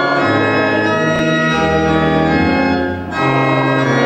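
Organ playing slow, sustained chords that change every second or so, with a short break near three seconds before the next chord.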